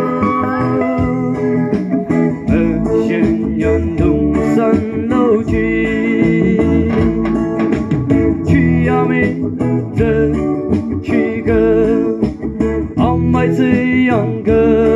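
A solo singer singing with vibrato into a microphone over guitar and bass accompaniment, amplified through a PA system.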